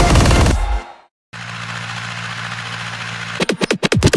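Electronic music fades out about a second in; after a short gap an Ursus C-355 tractor's diesel engine runs steadily for about two seconds while tedding hay. Near the end a fast run of rapid beats starts as the music comes back in.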